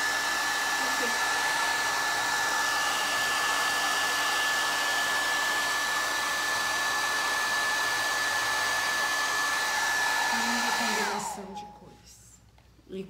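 Handheld hair dryer blowing steadily, drying fresh paint on a plaster frame, with a constant high whine over the rush of air. Near the end it is switched off: the whine falls in pitch and the noise dies away as it spins down.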